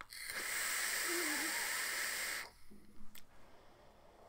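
Steady hiss of air drawn through a Vaporesso Target PM80 pod vape during a long inhale. It lasts about two and a half seconds and stops abruptly, followed by a single faint click.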